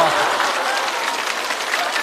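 Studio audience applauding steadily, a dense even patter of many hands clapping.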